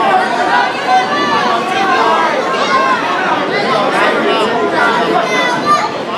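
Crowd chatter: several onlookers' voices talking over one another, none of them clear on its own.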